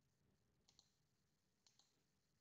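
Near silence, with two faint double clicks of a computer mouse about a second apart.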